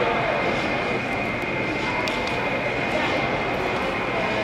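Ambience of a large gymnastics hall: indistinct background chatter over a steady hum, with a faint steady high tone and a couple of faint clicks.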